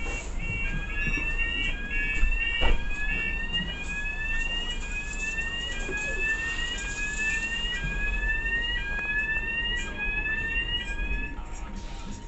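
Electronic warning alarm on a London bus: a repeating rising two-tone sweep, about one every three-quarters of a second, that stops shortly before the end.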